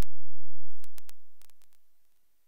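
Loud clicks and pops from a microphone being switched off, with a low electrical buzz for about half a second, then a few more clicks as the sound fades steadily away to silence.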